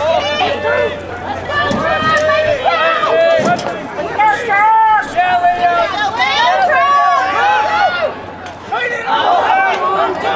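People's voices talking and calling out, fairly high-pitched and with hardly a pause; the words are not made out.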